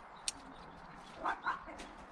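Two short, quick animal yelps a little past the middle, with a sharp click of pruning shears snipping a viburnum stem shortly after the start.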